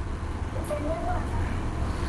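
Faint snatches of a voice over a telephone line, with a steady low hum beneath.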